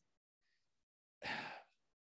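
Silence broken a little past halfway by one short, audible breath from a man, lasting under half a second.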